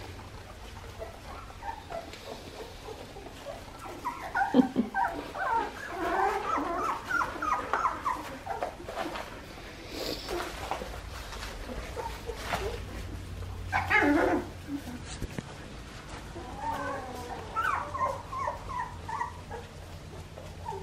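A litter of nearly three-week-old Australian Shepherd puppies whining and squeaking in several spells: a long run about four seconds in, a louder cry near fourteen seconds and more near the end, with scattered rustling of the wood-shaving bedding.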